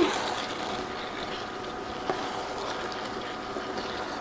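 Sloppy joe pasta with melting cheese simmering in a skillet while a wooden spatula stirs through it, a steady low bubbling noise.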